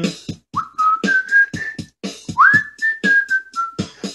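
A person whistling a short melody in two phrases, each starting with an upward slide and then holding and stepping between a few notes, the second phrase stepping down near the end. A steady clicking beat keeps time underneath.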